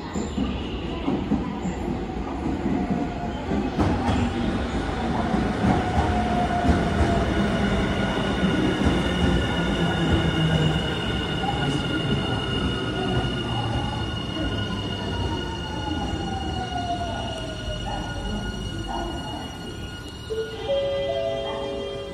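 Nankai 50000 series 'rapi:t' limited-express train pulling in alongside a station platform and slowing, with a heavy rumble of wheels on rail and a high steady squeal. Partway through, a whine falls steadily in pitch as the train brakes.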